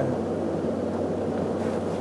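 Steady low hum of background room noise, with no other event.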